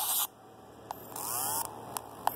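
Electromagnetic interference from a running laptop logic board, made audible by an Ear Tool inductive EMI detector. It comes as bursts of high static: one at the start, a short click just before a second in, then a second burst with faint gliding whistles about a second and a half in.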